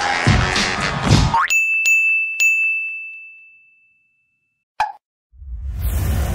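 Music cuts off about a second and a half in with a quick rising sweep. Three sharp, high dings follow, the last ringing out and fading. After a moment of silence and a short blip, a low rushing whoosh builds near the end: edited sound effects for an animated title transition.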